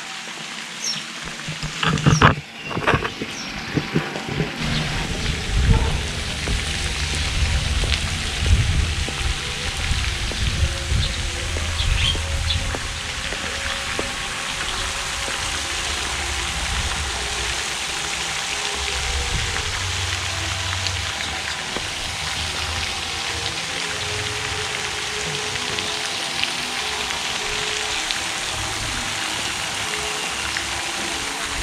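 Gusts of wind rumbling on the microphone over a steady hiss of splashing water from a pond fountain.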